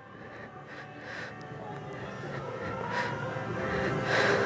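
A man's breathing while he holds a downward-dog stretch, soft at first and growing louder toward the end.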